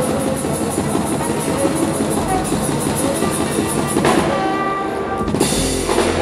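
Live jazz ensemble playing a fast, dense groove: drum kit and tablas drive the rhythm under double bass, trombone and flute. There are sharp accented hits about four seconds in and again just before the end, each followed by held notes.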